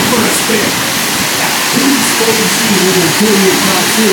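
Steady rushing of air over the camera microphone as the spinning ride car moves, with voices underneath.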